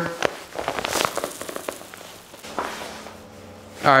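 Nylon drysuit fabric rustling and a heavy waterproof zipper being pulled closed across the shoulders: scattered clicks and short swishes, busiest in the first two seconds, then softer rustling.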